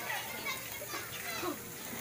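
Faint, indistinct chatter of children and adults, with no clear words.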